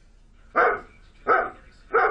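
A German Shepherd-type dog barking three times, evenly spaced about two-thirds of a second apart: distressed barking of a dog left alone at home, a sign of separation anxiety.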